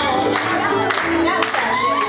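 Live band with banjo playing a square dance tune, with a voice singing over it and a regular plucked beat.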